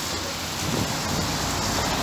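Steady hiss of road traffic passing on a wet street, tyres swishing on the rain-soaked tarmac.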